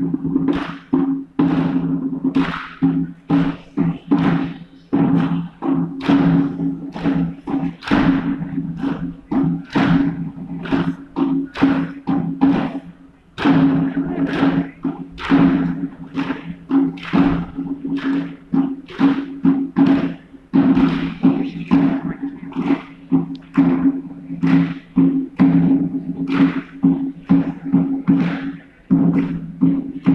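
Ceremonial march music: a drum keeps a steady beat, about two strokes a second, over a low droning held tone.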